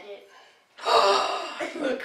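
A loud, breathy gasp from one of the players about a second in, running on into excited voice sounds.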